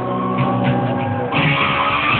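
Live rock band playing, with electric guitar to the fore; the sound is muffled, with the top end cut off. About a second and a half in the band comes in brighter and louder.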